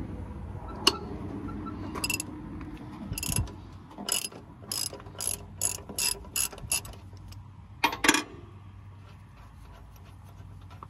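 Ratchet wrench clicking in short strokes, about two a second, as the bolts on a hydraulic pump bracket are loosened. There is a sharp knock about a second in and a louder double knock near the end.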